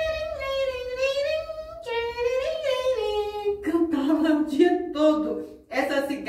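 A woman singing a short tune: long held notes at first, then shorter notes in a lower register in the second half.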